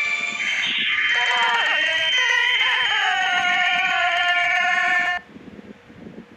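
A loud, high-pitched, voice-like cry with several tones: it slides in pitch at first, then holds steady, and cuts off abruptly about five seconds in, leaving a faint hiss.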